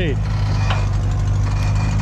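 Toyota rock buggy's engine running steadily at low revs as the buggy crawls down a steep dirt slope.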